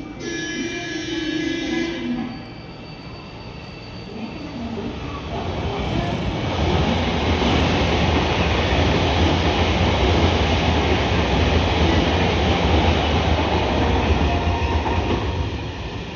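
A JR Central 383 series electric multiple unit passing through the station at speed. After a brief pitched tone in the first two seconds, the rolling rumble of its wheels on the rails builds from about four seconds in, stays loud and steady, and eases off near the end.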